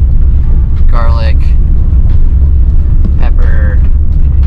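A steady low rumble, with short snatches of a voice about a second in and again near three seconds.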